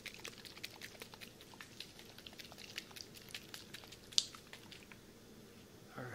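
Faint, irregular soft clicks and ticks close to the microphone, a few a second, with one sharper click about four seconds in.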